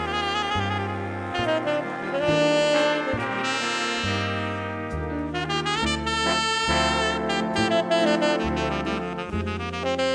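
Jazz big band playing live: a tenor saxophone solo over brass backing from trumpets and trombones, with piano, bass and drums underneath and the bass line stepping from note to note.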